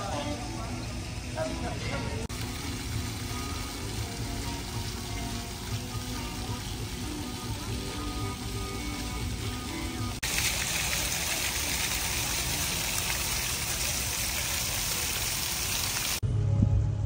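Plaza ground fountain jets spraying water: a loud, steady hiss that starts suddenly about ten seconds in. Before it there is faint background music and distant voices.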